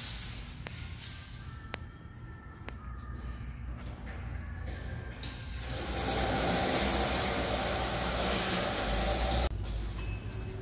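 A low steady workshop hum with three faint ticks about a second apart. About halfway in, a loud hiss of rushing air starts, holds steady, then cuts off suddenly near the end.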